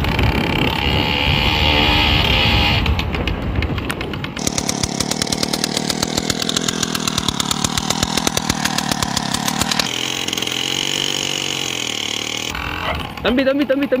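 Small 50cc engine of a motorized bicycle running with a rapid buzzing. The sound is cut together from several short clips, changing abruptly at about 3, 4.5, 10 and 12.5 seconds.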